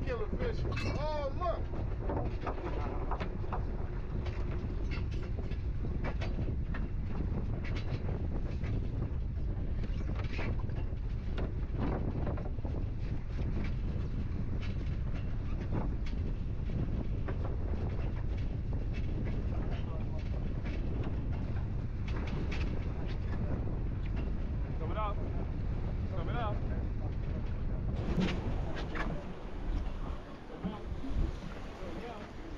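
Wind buffeting an action-camera microphone on an open boat at sea, a steady low rumble with gusty knocks, and faint voices calling out now and then.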